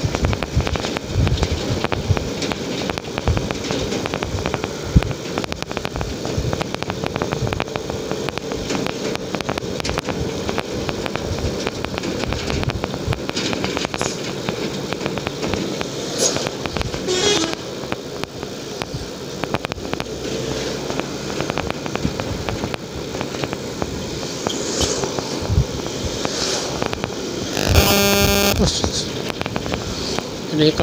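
Old Honda CB150R's single-cylinder engine running under way, with wind buffeting the microphone throughout. A short horn blast sounds near the end.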